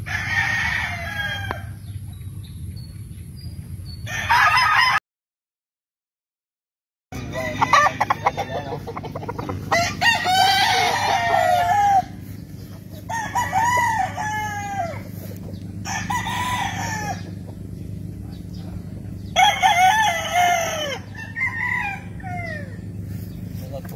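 Gamefowl roosters crowing again and again, about six crows spread through the few seconds, some overlapping one another. The sound cuts out completely for about two seconds near the start.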